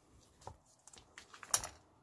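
A few light clicks and taps as a silicone mat is laid down on the work table and copper wire is handled on it. The sharpest tap comes about one and a half seconds in.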